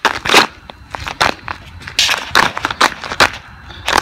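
Footsteps of sneakers fitted with studded rubber ice cleats on glazed ice and crusty snow, several irregular crunches as the studs bite in and break the icy surface.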